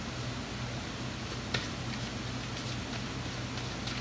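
Steady low hum of an electric fan running in a small room, with a faint click about one and a half seconds in and another near the end.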